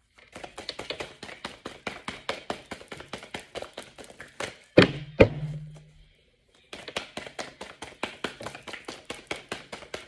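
A deck of reading cards being shuffled by hand: a quick run of card-edge flicks, about four or five a second. About halfway through, two sharp knocks come close together, then a short pause before the shuffling starts again.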